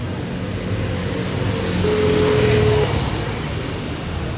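Street traffic with a car passing, swelling midway and then fading. About two seconds in, one second-long ringback tone sounds from a phone's speaker as an outgoing call rings.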